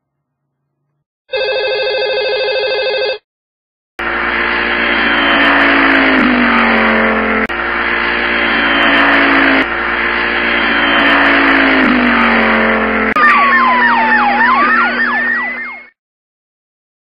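A steady electronic tone for about two seconds, then a car engine sound effect running for about twelve seconds, its pitch sinking and jumping back up several times like gear changes. Near the end a tyre screech slides down and then up in pitch before the sound cuts off.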